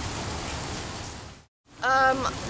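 Steady rain falling, an even hiss that fades out about one and a half seconds in.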